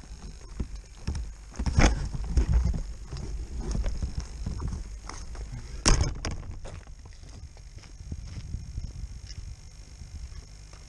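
Onboard camera on an RC plane rolling over rough tarmac: the landing gear and airframe rattle and knock with a low rumble, a sharp knock comes about six seconds in, and the noise then dies down as the plane comes to rest.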